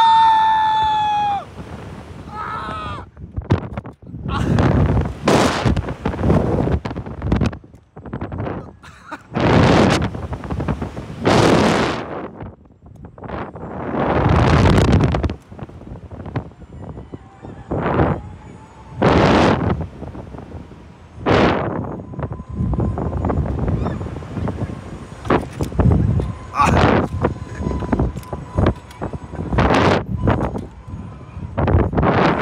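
A rider's high-pitched scream at the launch of a Slingshot reverse-bungee ride, then wind rushing over the on-ride microphone in repeated gusts, each lasting about a second, as the capsule is flung up and down on its cords. A faint steady whine runs through the last third.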